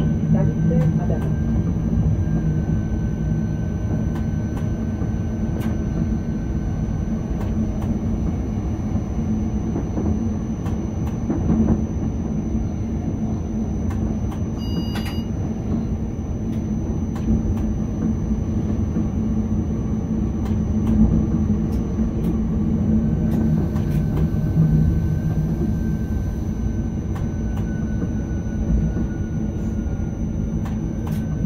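Škoda RegioPanter electric multiple unit running, heard from the driver's cab: a steady rumble of wheels on track with a faint, slightly drifting traction whine and occasional clicks. A brief beep sounds about halfway through.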